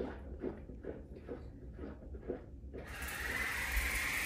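Quiet for almost three seconds, then an electric water flosser switches on and runs with a steady hum.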